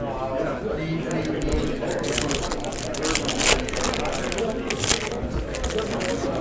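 Trading cards and a pack wrapper being handled by hand: a run of quick crackling rustles and small clicks from about a second in.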